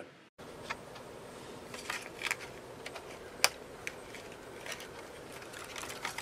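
Scattered light clicks and taps of an HP Pavilion g6 laptop keyboard being handled and lifted out of its case, its ribbon cable freed from the connector catch, with the sharpest click about halfway through. A steady faint hiss lies under them.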